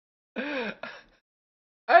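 A man laughing: one drawn-out voiced laugh followed by a short second burst, then a pause before he starts talking near the end.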